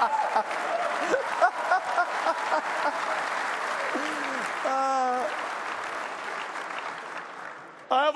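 Conference audience laughing and applauding. A single voice calls out briefly about five seconds in, and the clapping fades away near the end.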